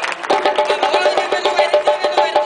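Live band starting up about a third of a second in: a quick, even run of short notes alternating between two pitches, about eight a second, with sharp percussion taps over it.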